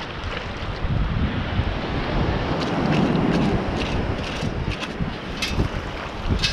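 Wind buffeting the microphone over the wash of shallow surf running around the ankles, swelling in the middle, with a few sharp clicks in the second half.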